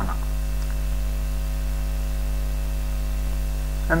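Steady electrical mains hum with a stack of overtones, holding at an even level under the recording.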